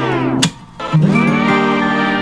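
Background music led by guitar, with sustained notes that drop out briefly about half a second in and come back about a second in.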